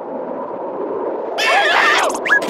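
A steady, even wind-like hiss, then about 1.4 s in a short squawking cartoon-character voice with a wavering pitch.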